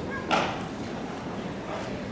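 Audience murmur in a large hall, with a brief cheer from someone in the crowd about a third of a second in.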